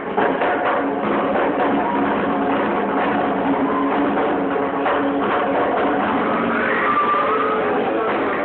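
Live rockabilly band playing loud and continuously: drum kit, slapped upright double bass and guitar, with a hand-held frame drum beaten by the singer.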